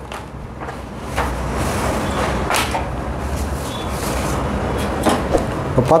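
Sheets of paper rustling and sliding across a table as a paper sewing pattern is handled, moved and smoothed flat, with a few sharper scrapes and a low rumble underneath.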